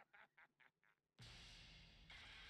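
Faint wheezy laughter in short pulses, about five a second, dying away within the first second. About a second in, a steady faint hiss starts suddenly.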